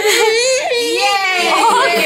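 A toddler whimpering and fussing in drawn-out, wavering high-pitched cries.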